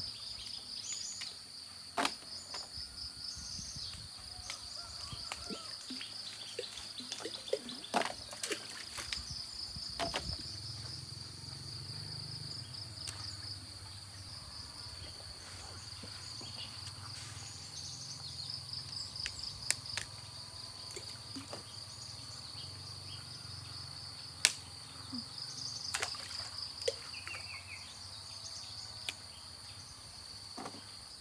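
A steady, high-pitched insect chorus with a rapid pulsing chirr runs throughout. Occasional sharp clicks and snaps come from the fig tree's branches and fruit being handled. A low hum joins about ten seconds in.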